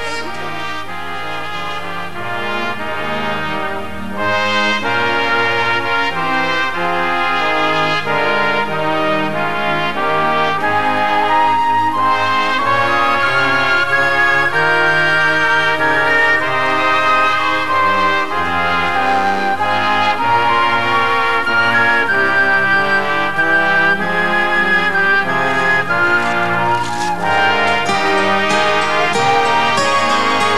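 Brass section of trombones and trumpets playing an instrumental German Christmas carol medley in a folk-band arrangement; the music grows louder about four seconds in.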